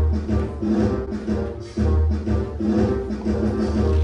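Upbeat music with a heavy bass line and a steady beat, playing for dancing.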